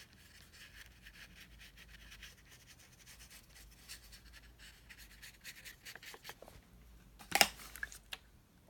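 Faint, scratchy strokes of a watercolour paintbrush on paper, many small soft ticks and rubs. About seven seconds in, one short, sharp knock is much louder than the strokes.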